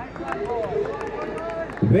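Indistinct voices of people at the cricket ground, quieter than the commentary, with a male commentator's voice coming back in near the end.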